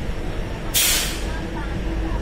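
A DEMU train's steady running rumble as it rolls slowly along the platform. It is broken by a short, loud hiss of air from the brakes a little before the middle.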